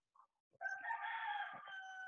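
A faint, drawn-out bird call, starting about half a second in and holding a steady pitch for over a second.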